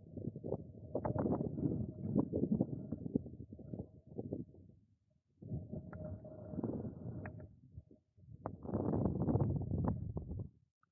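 Wind buffeting the microphone in gusts: an uneven low rumble that drops out briefly twice.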